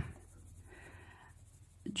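Faint scratching of a Faber-Castell Polychromos coloured pencil stroking lightly across paper as a face is coloured in, lasting about a second in the middle.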